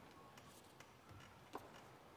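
Near silence in a large church, broken by a few faint, irregular clicks, the sharpest about one and a half seconds in.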